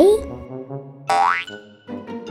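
Cartoon jump sound effect: one quick rising tone about a second in, over light background music.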